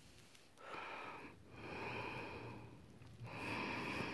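Three slow, faint breaths, each about a second long.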